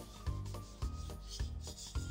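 Soft rubbing, brushing sound effect of a paintbrush stroking across paper, over light background music whose notes fall about twice a second.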